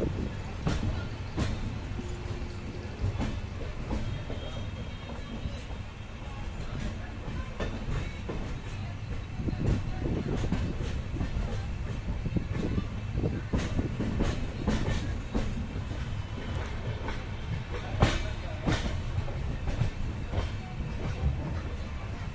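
Passenger train coach running at speed, its wheels clattering over rail joints and points with a steady rumble underneath. The clicks come in denser clusters in the second half, the loudest about eighteen seconds in.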